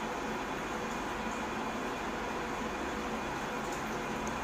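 Steady hiss with a low hum underneath, even in level throughout, with no distinct knocks or impacts.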